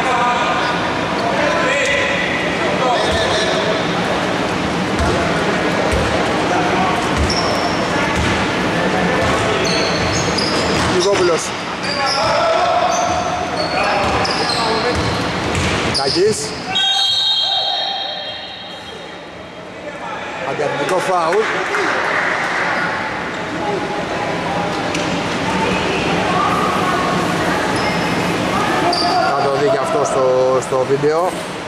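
Basketball bouncing on a wooden indoor court floor, with players' voices echoing in a large hall.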